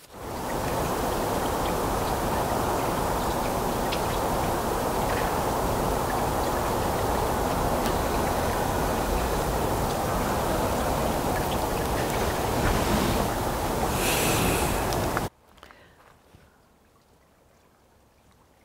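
A steady, loud rushing noise with no pitch or rhythm, which stops abruptly about fifteen seconds in, leaving near quiet.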